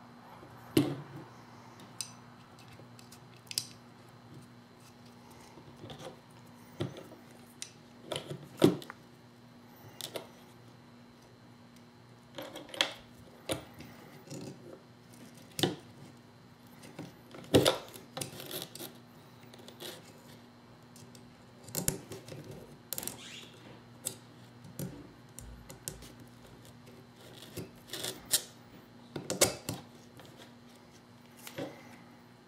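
Irregular clicks and taps of small metal parts and an Allen key being handled against a paintball marker's frame, scattered through with several sharper knocks, over a faint steady hum.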